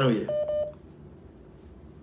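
Two short electronic beeps on a telephone line, about half a second in, right after a caller's word of speech. Faint line noise follows.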